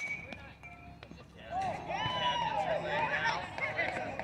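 A sharp crack of a softball bat hitting the ball, with a brief ringing ping, then several people shouting at once from about a second and a half in.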